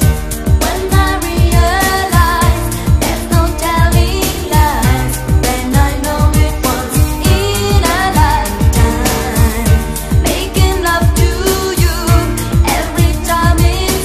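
A song with singing over a steady beat, played from a vinyl record on a DJ turntable.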